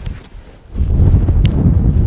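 Strong gusting wind buffeting the microphone: a heavy low rumble that grows much louder a little under a second in.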